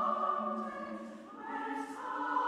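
Slow church music in long sustained chords, moving to a new chord about one and a half seconds in.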